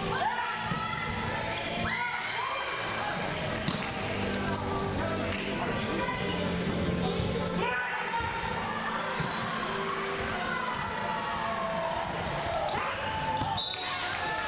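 Volleyball rally: several sharp smacks of the ball being hit, a few seconds apart, with players' voices calling out across the court.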